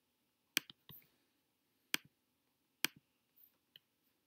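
Computer mouse clicking: a handful of faint, sharp single clicks, roughly a second apart.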